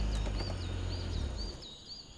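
A forest bird calling in a quick string of short, curling chirps, about three a second, with a low rumble underneath that fades out about a second and a half in.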